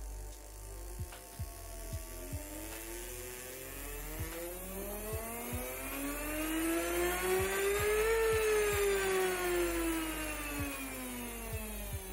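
A large brushed DC motor driven by PWM through an H-bridge whines as it spins. Its pitch climbs steadily as the duty cycle ramps up to full speed about two-thirds of the way in, then drops as the speed ramps back down. Faint irregular ticks are also heard.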